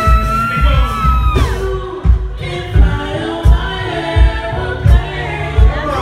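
Male soul singer singing live into a handheld microphone over a backing track with a steady low beat. He holds one long note for about the first second and a half, then sings on.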